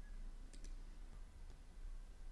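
Quiet room tone: two faint clicks about half a second in, over a low steady hum.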